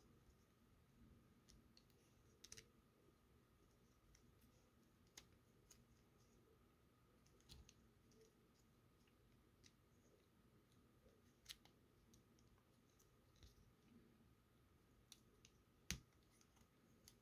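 Faint, scattered clicks and ticks of the hard plastic parts of a transformable action figure being handled and rotated at their joints, against near silence.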